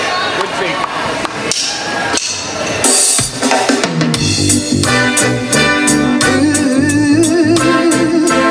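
Live reggae band starting a song: drum kit hits, a cymbal crash about three seconds in, then keyboards and bass come in with a slow, steady groove.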